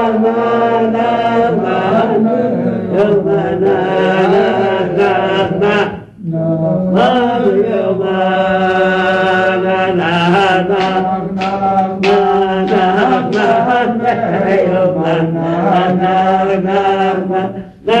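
Voice chanting a melody in long, drawn-out held notes, breaking off briefly about six seconds in and again just before the end.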